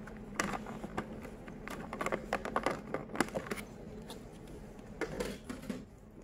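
Clear plastic sushi box being opened by hand: thin plastic crackling and clicking in quick irregular snaps, dying down after about three and a half seconds.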